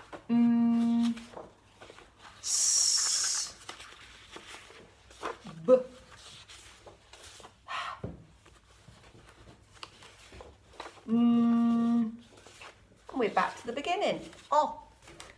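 A woman voicing pure phonics letter sounds from flashcards: a held humming 'mmm' near the start and again near the end, a long hissed sound about two and a half seconds in, and a few short clipped letter sounds, with paper cards being shuffled between them.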